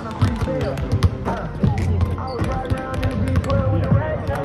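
Basketballs bouncing on a hardwood court during shooting practice: a run of irregular sharp thuds. Music plays in the background and people talk.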